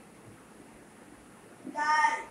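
A child's voice calling out a letter name in a high, drawn-out tone, starting near the end.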